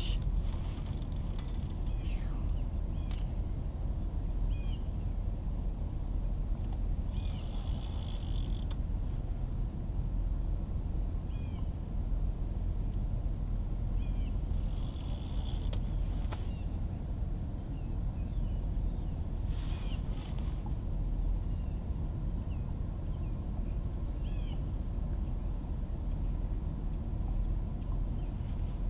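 Fishing reel drag buzzing briefly three times as a large blue catfish pulls out line, over a steady low rumble. Small birds chirp now and then.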